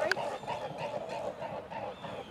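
Swans flying low over a pond, heard as a steady waterfowl sound of calls and wingbeats.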